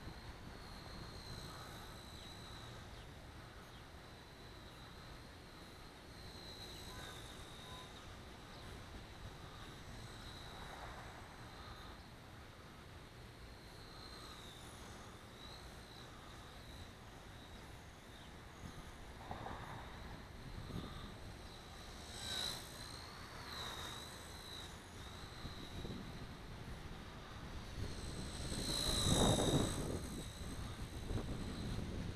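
Blade Nano CP S micro collective-pitch electric RC helicopter in flight: a faint high whine from its motor and rotor that wavers up and down in pitch as the throttle and pitch change. Wind buffets the microphone in gusts, strongest near the end.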